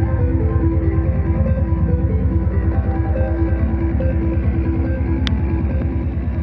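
Music with guitar and a fast, steady beat.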